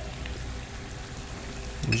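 Shrimp scampi in a butter sauce sizzling steadily in a steel pan over a gas burner.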